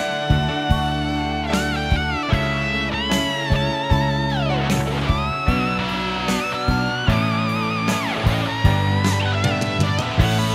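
Instrumental break of a pop-rock song with no singing: a lead electric guitar plays a solo of held, bent notes with downward slides, over bass and a steady drum beat.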